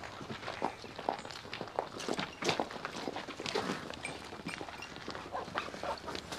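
Irregular footsteps with scattered light knocks and clatter.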